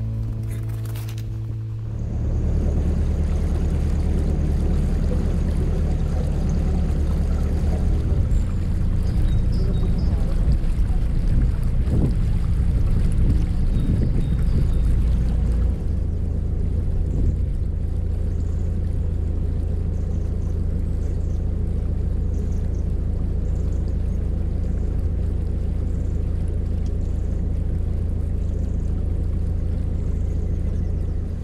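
Narrowboat engine running at a steady low hum while cruising, with water washing along the hull.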